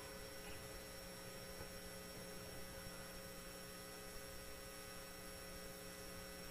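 Faint, steady electrical hum made of a few constant tones, with nothing else sounding.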